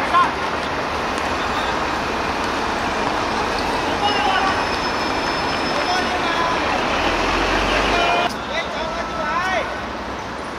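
Steady city traffic noise around an outdoor football court, with players' shouts breaking through now and then: a loud shout just after the start and a few more calls near the end.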